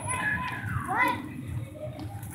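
Children's high-pitched voices calling out over a low murmur of background chatter.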